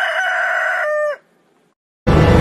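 A rooster crowing once: a single long call that drops in pitch at its tail and stops a little over a second in.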